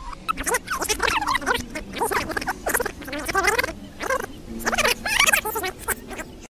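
Indistinct voices talking back and forth; no words come through clearly.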